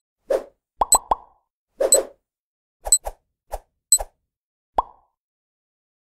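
Cartoon-style sound effects for an animated countdown: a quick run of about a dozen short pops and bloops, some rising sharply in pitch, mixed with crisp high ticks. They stop just before five seconds in.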